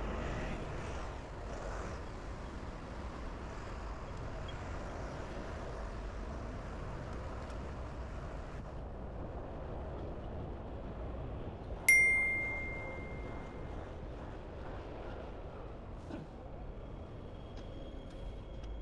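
Steady city street traffic noise. About twelve seconds in, a single sharp bell-like ding rings out and fades over about a second and a half; it is the loudest sound here.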